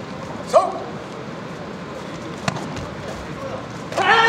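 Taekwondo sparring in a sports hall: a short, sharp shout rises in pitch about half a second in, a single sharp smack comes about two and a half seconds in, and a loud, sustained kihap shout begins right at the end as the fighters clash, over a steady hall hubbub.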